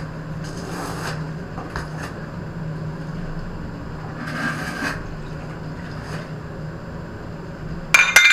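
Steel trowel scraping cement mortar onto the back of a ceramic floor tile in a few short strokes, over a steady low hum. A sharp, ringing clink comes right at the end.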